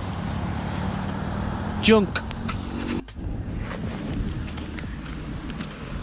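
Wind blowing on the microphone as a steady low noise, with one spoken word about two seconds in. The noise changes abruptly at a cut about three seconds in.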